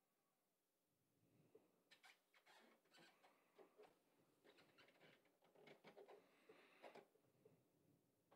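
Near silence with faint, irregular clicks and taps, starting about a second and a half in and going on until near the end.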